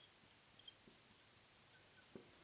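Felt-tip marker squeaking on a glass lightboard as it writes: two short, high squeaks about half a second apart.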